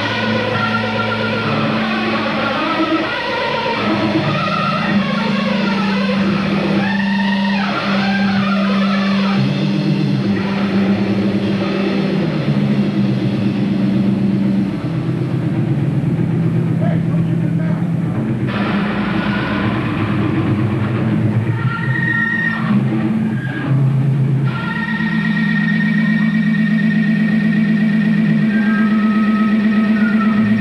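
Electric bass played loud through an amplifier: sustained low notes stepping from pitch to pitch under a distorted, noisy wash, settling into one steady droning note in the last few seconds.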